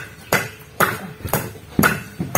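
Hammer strikes, about two a second and evenly spaced, each with a short metallic ring.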